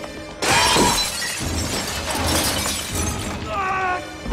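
Glass shattering with a sudden loud crash about half a second in, as a body is slammed into a glass-fronted cabinet, over orchestral film score. A man's strained cry follows near the end.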